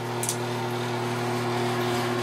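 Steady electrical hum from a running appliance or fan, a low buzzing tone with a hiss over it, and a brief high hiss about a quarter second in.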